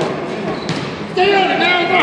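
A single sharp thump about two-thirds of a second in, then a high voice calling out from a little after a second in, with the echo of a large hall.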